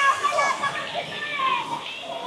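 High-pitched children's voices calling and shrieking in play, in short rising-and-falling cries.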